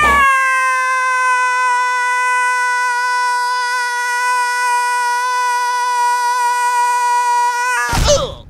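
Cartoon falling sound effect for a tumbling LEGO minifigure: one long, steady cry-like tone, with a whistle gliding downward over the first three seconds. It cuts off abruptly just before the end as the figure hits the ground.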